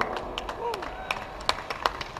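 Scattered hand clapping from a small crowd: a dozen or so sharp, irregular claps rather than a full round of applause.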